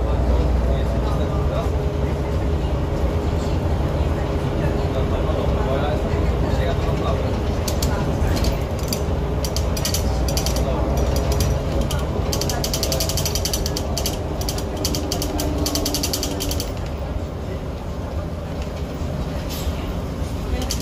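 Cabin sound of a 2002 Jelcz 120M/3 city bus underway: the engine's low drone under a dense rattling of the body and fittings, heaviest from about eight to seventeen seconds in.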